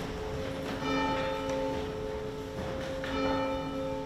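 Church bell tolling slowly, struck twice about two seconds apart, each stroke ringing on over the last.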